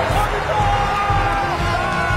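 Men shouting in celebration, long held yells, over background music.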